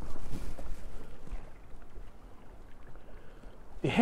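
Wind buffeting the microphone over choppy water lapping against the boat's hull: a steady low rumble that eases after the first couple of seconds.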